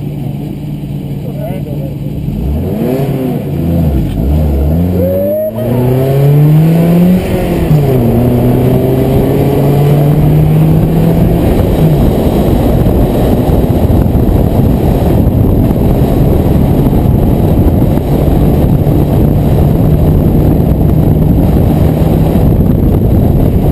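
BMW E36 318i four-cylinder engine heard from inside the cabin, accelerating hard from a standing start and revving up, with a sudden drop in pitch about five and a half seconds in and another near seven seconds, then running at fairly steady revs under heavy road and tyre noise.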